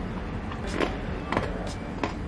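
Crunching from biting and chewing crispy Frosted Flakes–coated French toast: several short, sharp crunches about a second apart.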